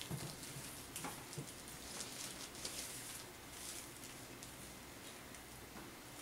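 Faint rustling and small crinkling ticks from a gift ribbon handled by hand on a plastic-covered table, as the thin wire is worked out of the ribbon's edge.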